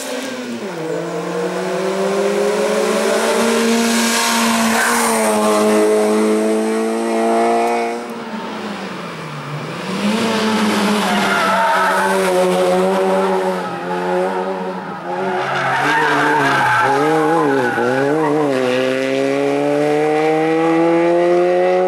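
Citroën Saxo race car's engine at full throttle, revving up in a long rising pull, then easing off and dropping in pitch for a bend about eight seconds in. It pulls hard again, with quick rises and falls in revs through the corners near the end, before a final rising pull.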